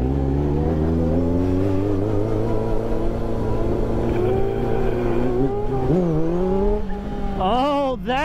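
Sport motorcycle engine running while riding at speed, its note wavering with the throttle. About six seconds in the pitch dips and then climbs again.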